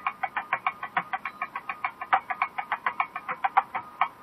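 Thavil drum played in a fast, even run of sharp strokes, about eight a second, over a faint steady drone.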